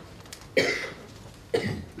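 A person coughing, with a sudden burst about half a second in and a second, shorter burst near the end.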